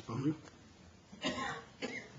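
A person coughing and clearing their throat in short bursts, the strongest about a second in, with a brief spoken word right at the start.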